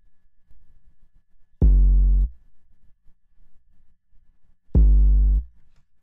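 Two short 808 sub-bass notes from Reason's NN-XT sampler, each about two-thirds of a second at a steady pitch and cut off abruptly: one about a second and a half in, the other near the end. They are notes heard back as they are placed in the piano roll.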